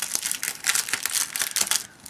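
A clear plastic book bag crinkling and rustling as hands open its flap and handle the book inside, an irregular, scratchy plastic rustle.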